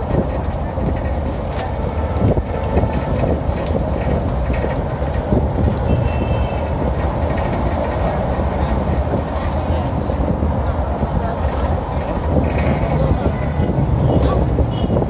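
Steady low rumble of a moving open-top double-decker tour bus and the dense city traffic around it, heard from the open upper deck.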